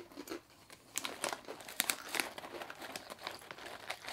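Crinkling of a plastic snack bag of habanero ring chips being handled, a run of quick crackles starting about a second in.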